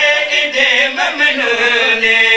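A man's voice chanting a qasida in a melodic recitative. The pitch bends through the phrase, then settles into a long held note near the end.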